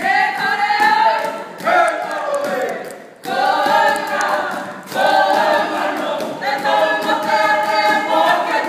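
A group of voices singing a Māori poi song in unison without instruments, in phrases broken by short gaps for breath.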